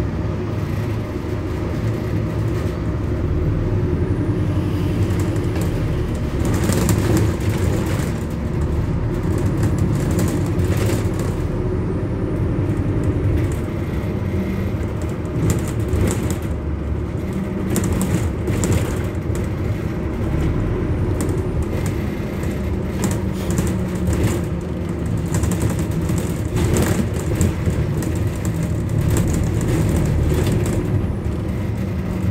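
Inside a moving bus: steady low engine and road rumble, with occasional short clicks and rattles.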